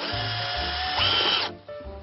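Cordless drill running under load, a steady whir whose pitch steps up about a second in as it speeds up, then stopping suddenly about a second and a half in.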